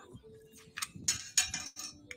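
A few short, crisp rustles of small items being handled, starting about a second in.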